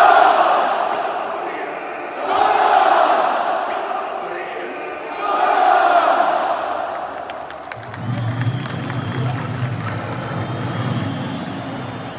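Football stadium crowd chanting and shouting in unison, the shout swelling in waves about every three seconds, then settling into a lower, steadier crowd din for the last few seconds.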